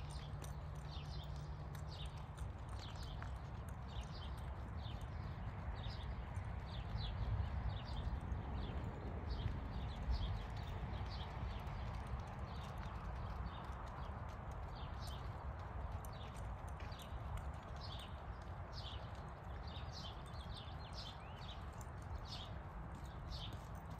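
Hoofbeats of a gaited horse moving out at an even, brisk gait on dirt arena footing, about two to three beats a second, over a low rumble.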